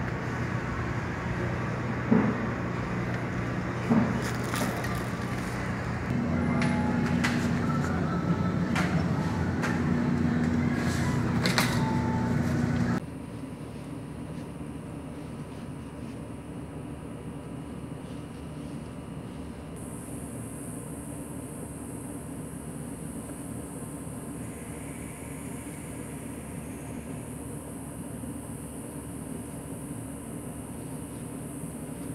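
Supermarket background: a steady low hum with several sharp clicks and knocks as items and the cart are handled. About 13 seconds in it cuts to a quieter, even, steady hiss outdoors, and a faint high steady tone joins it about 20 seconds in.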